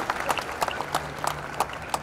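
Crowd applause: many hands clapping in a quick, irregular patter that thins out and grows quieter toward the end.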